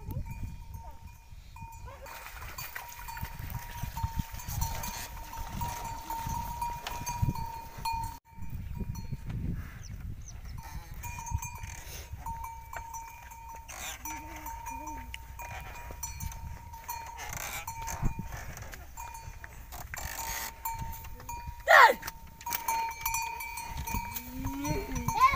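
Neck bell on a water buffalo ringing almost continuously as the buffaloes haul a loaded straw cart, a thin steady ring that fades and returns, over the low rumble of the cart and hooves on the muddy track. About two seconds before the end, a brief loud call sweeps up and down in pitch.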